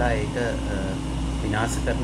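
A man talking, with a steady low hum underneath.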